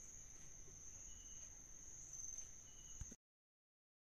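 Near silence: faint background with a steady high-pitched tone and a short, fainter tone about every second and a half. The sound cuts off to dead silence a little after three seconds in.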